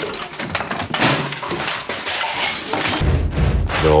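Glass shattering and objects crashing in a rapid run of breakage lasting about three seconds. A deep bass beat of music comes in near the end.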